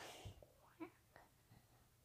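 Near silence: a faint breathy whisper close to the microphone near the start, then a few soft ticks.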